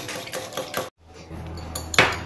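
Wire whisk beating egg and milk in a glass bowl, quick rhythmic clinking strokes about five a second. The strokes cut off abruptly about a second in, leaving a low hum with a few faint clicks.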